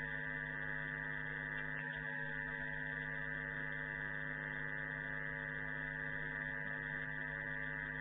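Steady electrical hum made of several fixed tones that stay level and unbroken throughout.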